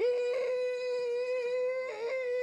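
A voice holding one shrill, piercing "eeee" at a steady high pitch for about two seconds, with a brief break near the end. It is a comic imitation of a grating voice, heard as a ringing in the ears.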